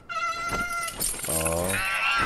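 A baby dragon's crying call, a sound effect from the TV show: one held, slightly wavering high squeal lasting about a second, followed by a short low voice.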